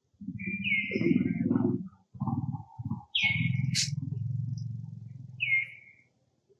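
A low, buzzy, drawn-out voice in three long stretches, with three short high chirps over it.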